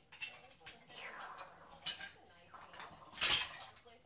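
Plastic toy building blocks clicking and clattering as children handle and rummage through them, with a louder clatter a little past three seconds in.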